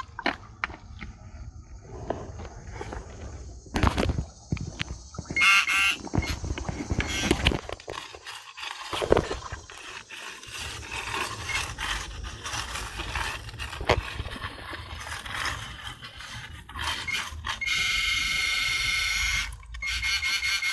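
Handheld pinpointer probe sounding an electronic tone as it finds a target in wet river gravel: a short tone about five seconds in and a steady tone for about two seconds near the end. Between them, many clicks and scrapes of gravel and stones being moved.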